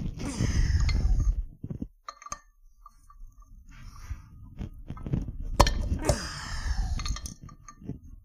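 A short laugh, then handling noise from taking apart an aluminium cylinder head: small metal clinks of valve springs and retainers being worked by hand, with rustling bursts near the start and again past the middle, and one sharp click in that second burst.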